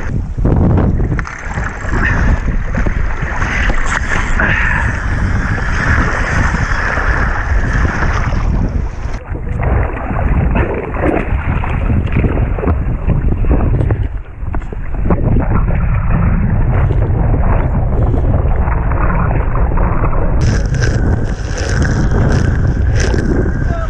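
Wind buffeting a helmet-camera microphone, with rough sea water sloshing and splashing against a capsized dinghy's hull. The sound goes muffled and duller from about nine seconds in until near the end, then turns bright again.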